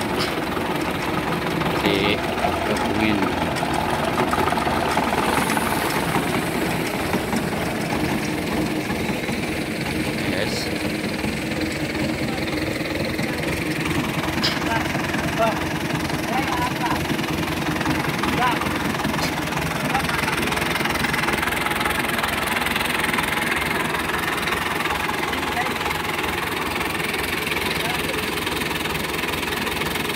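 Small farm tractor's engine running steadily at a constant speed, driving a tractor-mounted piston sprayer pump that circulates water and herbicide to mix them in the tank.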